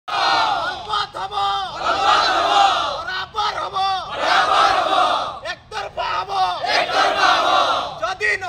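A crowd shouting slogans in call and response: a single voice calls out a line three times, and each time the group shouts back together, four group responses in all.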